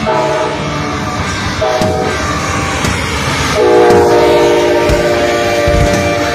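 Amtrak GE Genesis diesel locomotive blowing its multi-note chord horn as the passenger train passes at speed, its notes shifting twice. The train's running rumble is heard under the horn.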